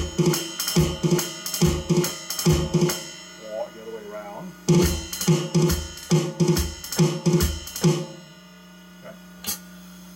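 Electronic drum kit through an amplifier playing drag rudiments (two ghost notes into an accent) on a cymbal, with low thuds under the hits. It plays in two runs of about three seconds each with a short break between. After the second run it stops, leaving a steady amplifier hum and one more hit.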